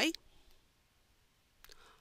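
A few faint computer mouse clicks: one about half a second in and a short cluster near the end, with near silence between.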